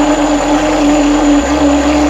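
Brushless electric ducted fan running underwater in a water-filled PVC loop, a steady high-revving motor whine over churning water. The high-KV motor is trying to spin far faster than water allows, so it is straining its speed controller, which is getting hot.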